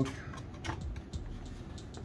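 A few light plastic clicks as the laptop's bottom cover is worked loose around its edge, its snap clips releasing.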